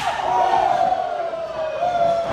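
A person's long, held yell slowly falling in pitch, over crowd noise at a live wrestling match.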